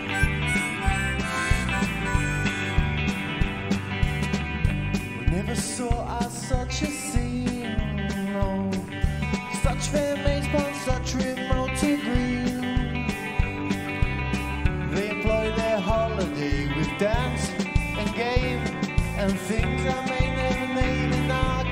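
Live band playing a blues-rock passage on electric guitar, bass and drums, with a harmonica blown into a cupped microphone as the lead, its notes bending up and down.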